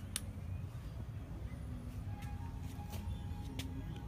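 Low steady rumble of a handheld phone's microphone being moved about, with a few light clicks. Faint held notes of music sound in the background in the second half.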